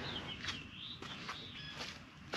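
A bird calling faintly in the background: one wavering, warbling high call about a second long, then a short high note near the end, with a few faint light ticks.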